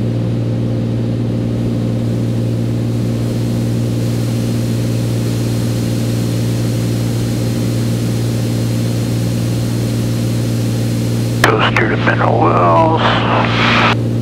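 Beechcraft A36 Bonanza's six-cylinder piston engine and propeller droning steadily, heard inside the cabin in flight. A voice cuts in about eleven seconds in.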